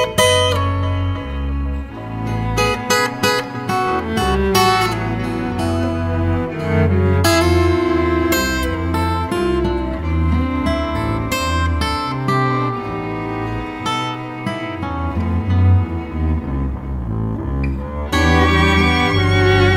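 Instrumental chamber music from a string quintet of acoustic guitar, violin, viola, cello and double bass, with sustained low bass notes under a busy line of sharply struck and held notes.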